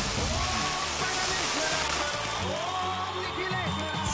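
A hissing, scattering rush like grains being flung, the sound effect of a handful of salt thrown across the ring in a sumo salt-throwing ritual, fading over the first couple of seconds. Background music plays throughout.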